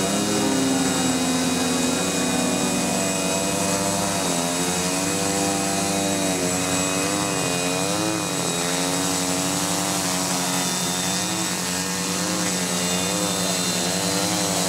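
OFM Hoist-700 quadcopter's motors and propellers running in a hover. The pitch wavers up and down, more from about four seconds in, as the DJI Naza M flight controller corrects motor speeds to hold GPS position.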